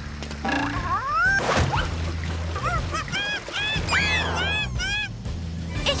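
Cartoon background music with a steady bass line. Over it come cartoon sound effects: a rising glide about a second in, then a quick run of short, squeaky, rising-and-falling chirps in the middle.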